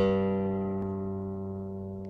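Intro music: a single low plucked-string note, struck sharply and left ringing as it slowly fades.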